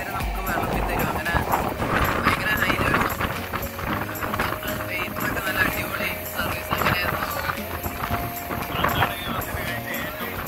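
A man talking over background music, with the running noise of a moving passenger train beneath.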